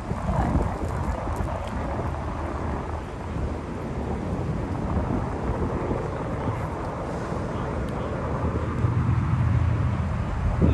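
Street ambience: a steady rumble of road traffic mixed with wind on the microphone, growing a little louder near the end.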